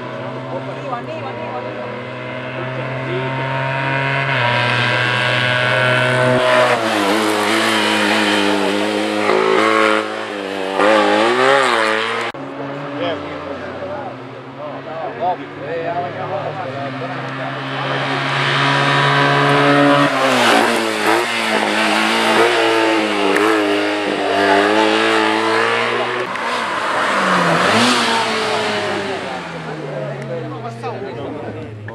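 Small racing-car engines revved hard through a slalom of cones, the pitch climbing and dropping again and again with throttle and gear changes. There are two loud runs with a quieter lull between them.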